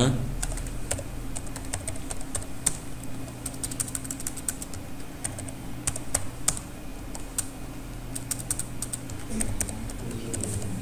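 Typing on a computer keyboard: irregular key clicks, several quick runs of strokes, over a low steady hum.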